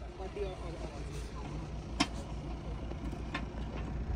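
Faint talking voices over a steady low rumble, with one sharp click about halfway through.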